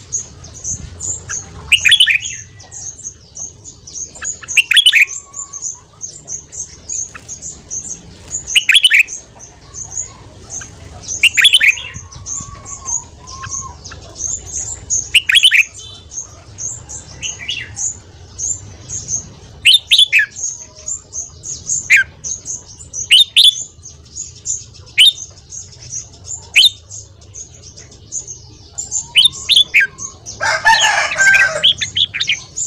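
Red-whiskered bulbul calling: about a dozen short, sharp notes that fall in pitch, one every two to four seconds. Under them runs a fast, steady, high-pitched twittering.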